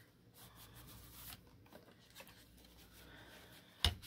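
Hands smoothing a freshly glued paper piece down onto a journal page: faint paper rubbing and rustling, with a short sharp click just before the end.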